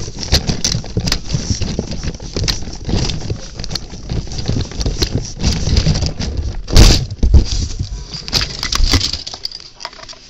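Handling noise from a handheld camera rubbing and knocking against things close to its microphone: irregular rustling and scraping with many small clicks, and one loud knock about seven seconds in.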